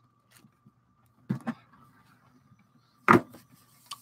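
A few soft knocks as a cardboard box is set down on a tabletop, the loudest about three seconds in, over a faint steady high hum.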